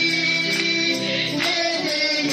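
A woman singing a hymn into a microphone, holding long notes, with sharp percussive hits behind the voice.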